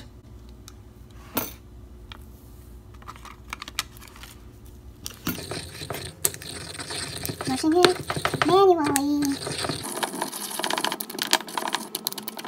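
A pestle grinding and stirring shea butter in a marble mortar: after a single tap early on, rapid clicking and scraping strokes of pestle against stone start about five seconds in and keep going. A short hummed voice sounds over the grinding around the middle.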